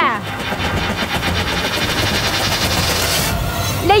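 Rapid, steady drumroll, the suspense sting before a game-show announcement, with a low rumble beneath. It stops short near the end.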